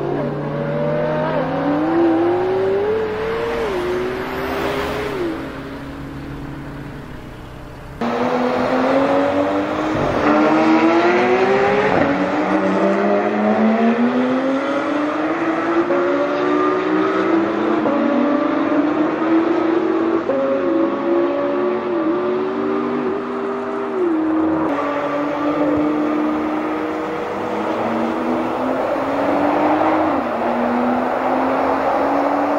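Supercar engines accelerating hard, the pitch climbing and dropping back with each upshift, in several runs that cut abruptly from one to the next; the middle stretch is a McLaren P1's twin-turbo V8 at full throttle on a race track.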